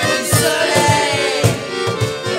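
Acoustic guitar strummed in a steady beat with a button accordion playing the tune, and women's voices singing along.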